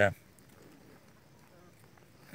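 A single spoken word at the very start, then a quiet outdoor background with faint, low bird calls twice.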